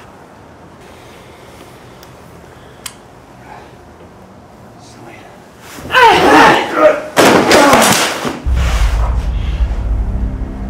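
A loud cry of pain about six seconds in, then a hard thud like a body hitting a concrete floor, as one fighter is knocked down. Low ominous music starts near the end.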